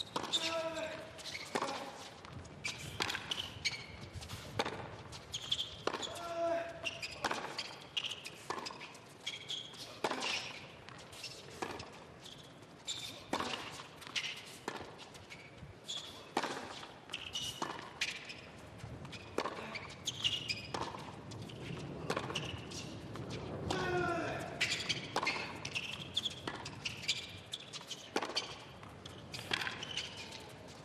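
A long tennis rally on a hard court: racquets striking the ball and the ball bouncing, about once a second, with short grunts from the players on some shots.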